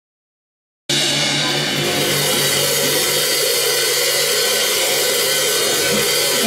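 Silence, then about a second in a live rock band cuts in abruptly: a steady wash of drum-kit cymbals over held electric guitar chords.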